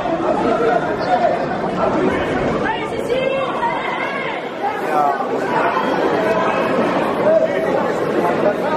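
Many overlapping voices of spectators and coaches chattering in a large sports hall, with one or two louder voices standing out about three seconds in.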